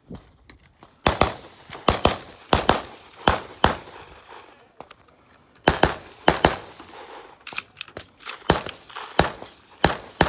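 A string of gunshots from a semi-automatic long gun, fired about two to three shots a second. There is a pause of about a second in the middle, then a second quick string.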